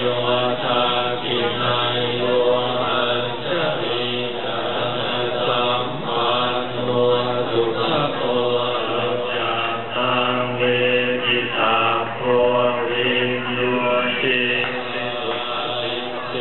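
Buddhist chanting: a group of voices chanting together in steady unison, with long held notes.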